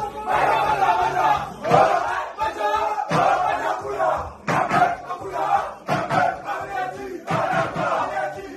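A group of men chanting and shouting together in loud, short repeated phrases, a rowdy group celebration chant.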